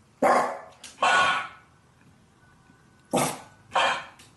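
Shiba Inu giving short, gruff barks: two quick pairs, the second pair near the end.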